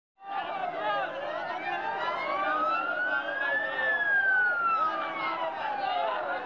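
A siren wailing in one slow rise and fall: its pitch climbs for about three seconds, peaks past the middle, then sinks away toward the end. Under it a crowd is shouting.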